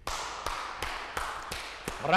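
A few people clapping by hand: separate sharp claps at an uneven pace over a steady hiss, starting suddenly as the song ends.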